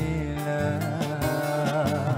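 A male vocalist singing with a live band behind him, his held notes wavering with vibrato.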